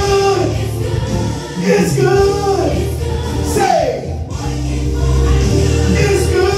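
A man singing a gospel worship song into a handheld microphone over instrumental accompaniment with sustained low bass notes.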